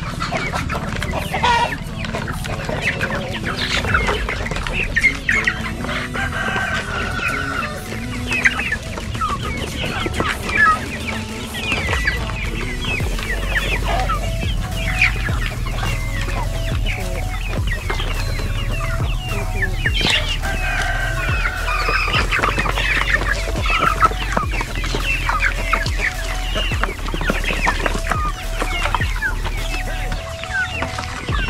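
A flock of chickens clucking continuously around their feed, many short overlapping calls from hens and young birds.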